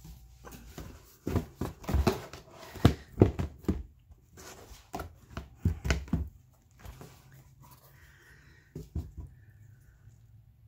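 Coffee-soaked paper pages being handled by hand in a plastic tub: a run of short slaps and knocks as the wet sheets are separated and pressed flat, in two bunches with a short pause between, and a few more near the end.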